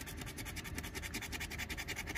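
Scratch-off lottery ticket's coating being scraped off with a handheld scratcher, in rapid, even back-and-forth strokes, several a second.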